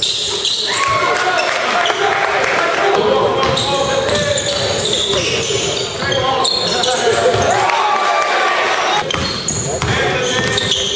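Live basketball game sound in a gym: a ball bouncing on the court amid overlapping shouts from players and spectators.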